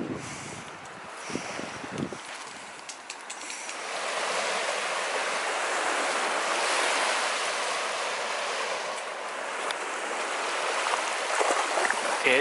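Small waves lapping and washing onto a sandy lakeshore, a steady hiss that grows louder about four seconds in. Wind rumbles on the microphone in the first two seconds.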